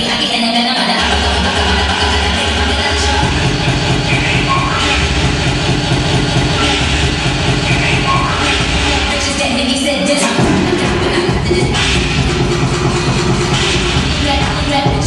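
Loud dance music with a heavy bass beat, played for a stage dance routine; the bass line fills in about three seconds in and drops out for a moment just after ten seconds in.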